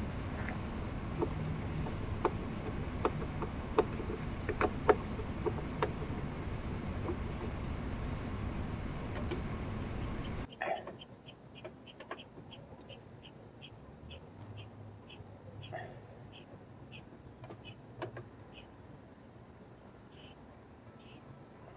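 Scattered light clicks and knocks from small parts being handled during a snorkel install, over steady outdoor background noise. After an abrupt cut about halfway through it turns much quieter, with a faint short high chirp repeating about twice a second.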